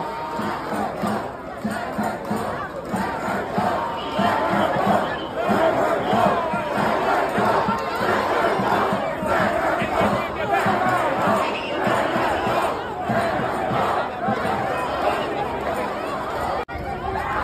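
A crowd of protesters shouting, many voices at once, loud and without a break.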